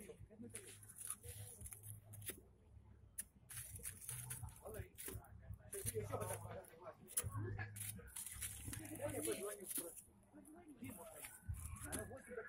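Faint, indistinct talking of several people, with scattered light clicks and knocks of handling.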